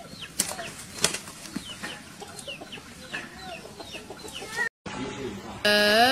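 Short chirping bird calls repeated about twice a second, over scuffling and clicks. They cut off abruptly near the end with a moment of silence, then a loud held electronic tone comes in.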